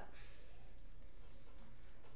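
Steady background hum and hiss in a pause between words, with no distinct sound events.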